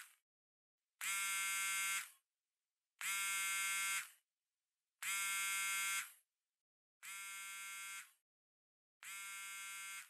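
Mobile phone ringing with a buzzer-like electronic ring tone, each ring lasting a second with a one-second gap between. The last two rings are quieter.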